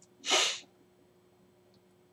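A single short, sharp burst of breath from a man, about half a second in, with no voice in it. The rest is near silence with a faint steady hum.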